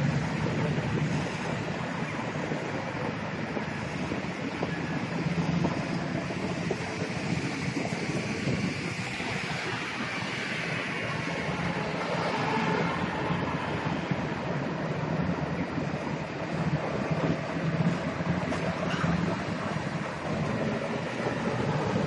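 Steady outdoor city-street noise: a constant wash of distant traffic and rumble, with wind on a handheld microphone.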